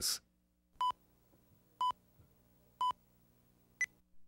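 Electronic countdown beeps on a commercial's slate: three identical short beeps about a second apart, then one shorter, higher-pitched beep, cueing the start of the spot.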